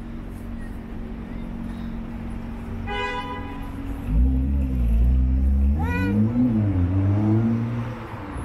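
Street traffic. A vehicle engine close by grows loud in the second half, its pitch rising and falling. A short toot comes a little before halfway and a brief high call about three quarters through.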